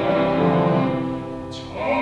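A baritone singing a Korean art song with piano, violin, viola and cello accompaniment. The music softens about a second and a half in, then swells again near the end.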